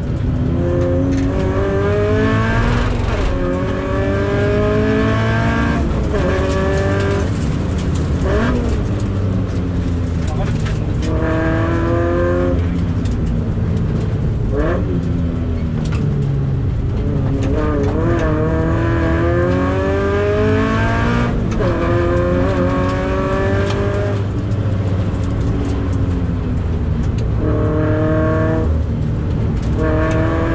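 Toyota 86 (ZN6) with its FA20 2.0-litre flat-four engine, heard from inside the cabin accelerating hard. The engine's pitch climbs again and again and drops back at each gear change or lift, about every two to four seconds, over a steady rumble of road and tyre noise.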